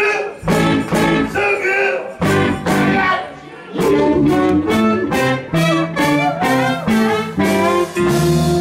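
Live band with electric guitars playing short, punchy chord hits about twice a second, with brief breaks between phrases.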